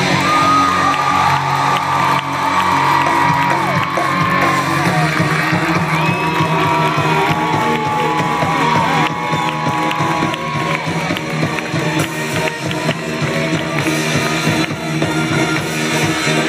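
Live rock band playing loud and amplified on stage, a lead line bending up and down in pitch over the band, with some crowd whoops mixed in.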